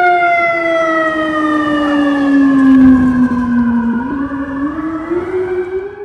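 Fire truck siren sounding one long held tone that slides slowly down in pitch for about four seconds, then climbs back up near the end, with a low rumble under it around the middle.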